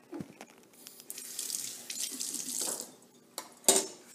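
Kitchen sink faucet running water into the sink for about two seconds, then a sharp knock near the end.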